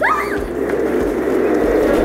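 A short rising squeal from a child, then the steady rolling noise of plastic gym-scooter casters running fast across a wooden floor.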